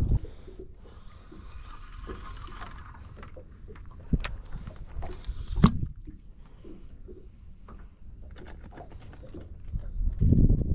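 Handling noise from a spinning rod and reel: a soft whirring of the reel for a couple of seconds, then two sharp clicks about a second and a half apart, the second the louder, with a few light ticks after.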